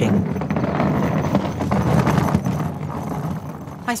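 Small plastic wheels of a trolley suitcase rolling over a tarmac road in a continuous rumble with fine rattling, easing off near the end.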